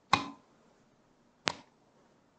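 A 24 V DC magnetic contactor switching as the push button feeding its coil is worked: two sharp clicks about a second and a half apart, as the armature pulls in and drops out.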